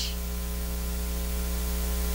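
Steady electrical mains hum with a stack of evenly spaced overtones, under a constant hiss, from the microphone and sound system.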